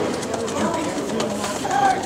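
Indistinct voices of people talking and calling out in the background, quieter than the cheering shouts around it.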